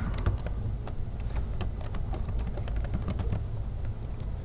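Computer keyboard keys clicking in quick, irregular keystrokes as a word is typed.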